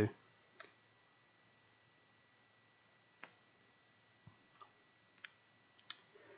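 A few faint, soft mouth clicks, lip smacks from drawing on a cigar, spaced irregularly about once a second over quiet room tone.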